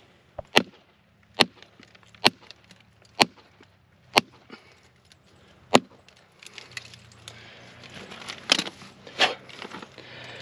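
A steel rock hammer striking and prying at thinly bedded black phyllite: six sharp taps about once a second, then softer scraping and knocking with two louder strikes near the end as a thin slab is worked loose from the outcrop.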